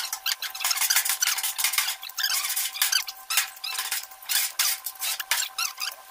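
A steel putty knife scraping and spreading filler over the sheet-steel surface of an old almirah, in quick repeated strokes with squeaks as the blade drags.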